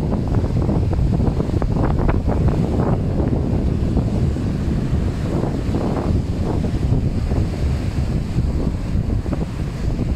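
Wind buffeting the microphone in a steady low rumble, over small waves breaking and washing up on a sandy shore.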